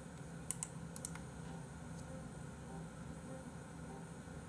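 A few faint, sharp clicks of computer keyboard keys in the first second or so, over a faint steady low hum of room tone.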